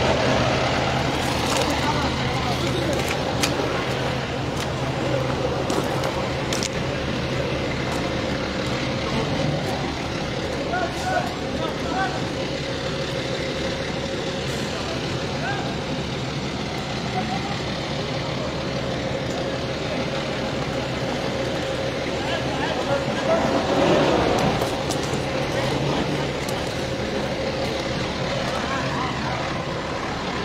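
Diesel engine of a fire-fighting water tanker truck running steadily, a continuous low drone with a faint steady whine over it. Voices come and go in the background.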